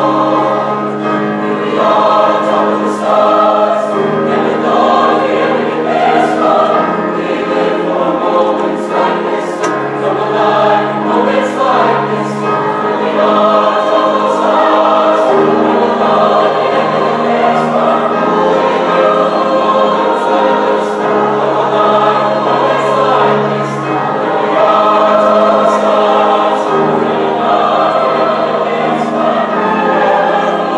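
A mixed-voice high school choir singing, holding long sustained chords, with the crisp 's' consonants of the words cutting through.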